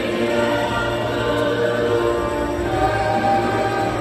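Church choir singing a hymn in long held notes, with a steady low accompaniment underneath.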